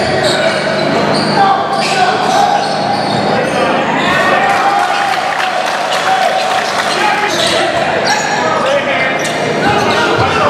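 A basketball bouncing on a hardwood gym floor in repeated dribbles, with players' and spectators' voices, all echoing in the gym.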